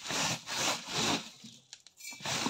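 Dry whole spices being scraped and swept by hand across a woven bamboo tray: three quick rasping strokes, then a few faint clicks of seeds.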